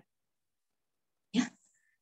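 Near silence, then one short spoken word, 'ya', about a second and a half in.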